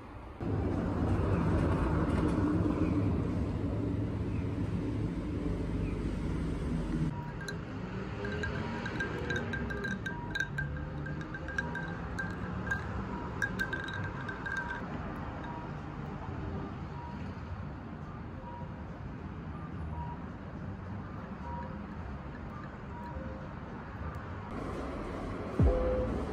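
Background music, with ice cubes rattling and clinking in a glass of iced latte stirred with a straw, a run of light clinks from about a third of the way in to just past the middle.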